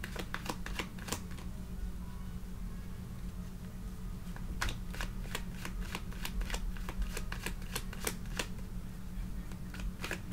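A deck of tarot cards being shuffled by hand: an irregular run of sharp card clicks and flicks, sparse for a few seconds in the middle, then busier again. A low steady hum sits underneath.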